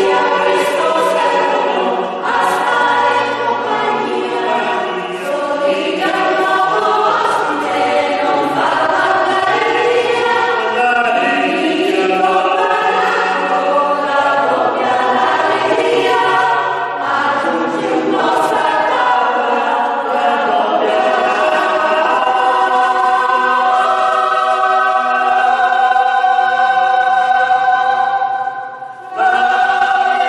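Mixed-voice polyphonic choir singing in parts, with a short break in the sound just before the end before the voices come back in.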